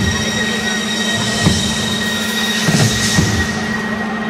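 Loud live electronic music between beats: a sustained high synth drone over a steady low hum, with scattered deep thuds at irregular times. Crowd noise swells briefly about three seconds in.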